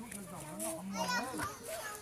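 Children's and adults' voices talking and calling out, not close to the microphone.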